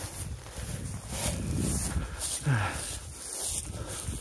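Footsteps swishing and rustling through long grass and scrub. About halfway through comes a short vocal sound that falls in pitch.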